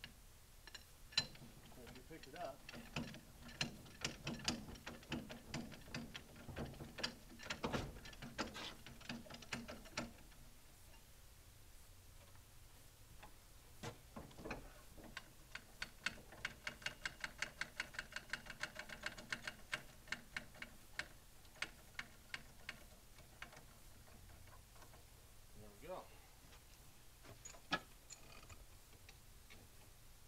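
Ratchet of a hand-levered come-along hoist clicking as its handle is pumped to drag logs. There are irregular runs of clicks in the first ten seconds, then a fast, even run of clicks for several seconds past the middle, and a few stray clicks near the end.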